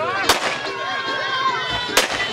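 Two champagne corks popping, one shortly after the start and a second about 1.7 seconds later, over crowd chatter.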